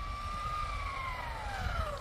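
Electric drive whine of a Tamiya TT02 radio-controlled car, from its motor and gears. It holds a fairly steady pitch for the first half second, then falls smoothly over the rest as the car slows.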